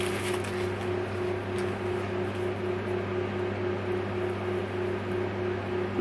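Electric room fan running steadily: a constant motor hum under an even rush of air.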